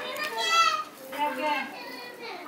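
Children's high-pitched voices calling and chattering in the background, loudest about half a second in.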